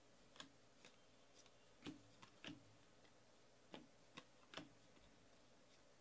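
Faint, irregular clicks and snaps of Donruss baseball cards being flipped and slid from one hand to the other while a stack is sorted. The clicks come a few at a time, with a busier run of three a little before the last third.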